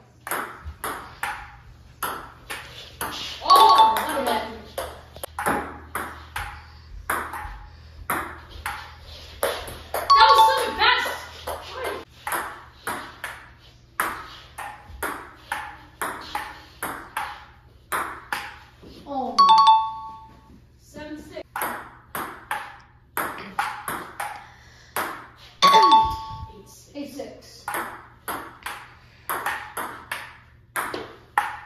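Table tennis ball clicking back and forth off paddles and a hardwood table, a quick steady patter of sharp ticks a few per second through the rallies. Four times, as points end, a louder outburst with a held ringing tone cuts in over the clicks.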